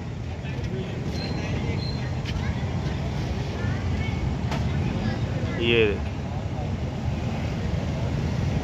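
Steady low rumble of distant traffic, with faint high chirps in the first few seconds.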